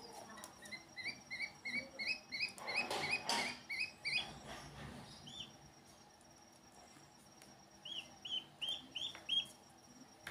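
Ducklings peeping: runs of short, high, quick peeps, about three a second, in a burst over the first four seconds and again near the end. A brief swish of water about three seconds in.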